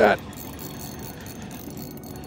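Fishing reel being cranked against a hooked walleye, a faint, quick ticking of the reel over a low steady background of the boat and water.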